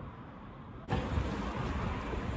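Outdoor background noise with a low rumble and no distinct event, jumping suddenly louder about a second in at a cut in the recording.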